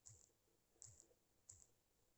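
Near silence with three faint, short clicks, about half a second to a second apart.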